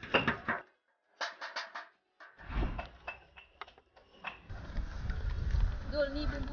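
A spoon scraping and tapping on metal cookware in two quick runs as pounded rice is spooned from a tray into a cooking pot, followed by a low rumble with scattered knocks.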